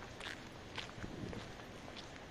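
Footsteps on a paved or gravel path, light crunching clicks about two a second, over a quiet background hum of the city.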